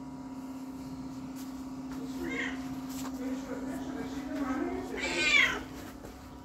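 Black-and-white domestic cat meowing, with one loud meow near the end.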